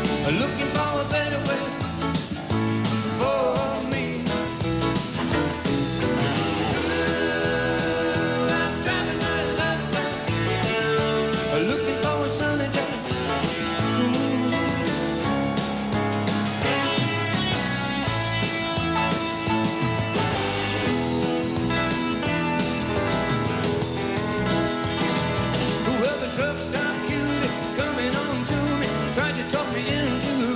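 Country-rock band playing an instrumental break between sung verses, with guitars, keyboards and drums at a steady beat.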